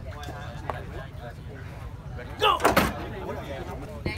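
A referee shouting "Go!" about halfway through to start an arm-wrestling bout, the loudest sound, over steady crowd chatter.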